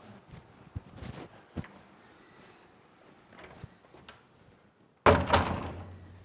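A few faint knocks and taps, then near the end a door shut with a loud, sudden thud that rings out for about a second.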